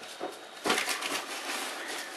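Cardboard and packing material rustling as hands dig through an opened shipping box, with a louder stretch of crinkling just under a second in.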